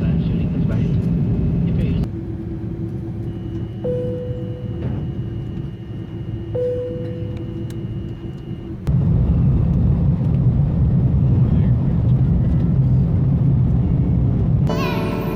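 Airliner cabin noise: a steady low rumble of the jet engines, in several cut-together pieces, loudest from about nine seconds in, around the take-off. In the middle piece, two short, slightly falling tones sound a few seconds apart over a steady hum.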